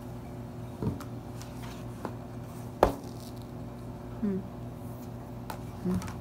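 Handling noise from an iPad in a leather folio case: scattered taps and knocks as the case and tablet are gripped and the cover is folded, the sharpest about three seconds in, over a steady low hum.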